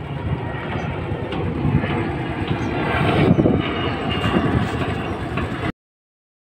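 Wind buffeting a handheld phone's microphone on an open shoreline: a steady, uneven low rumble that cuts off abruptly near the end.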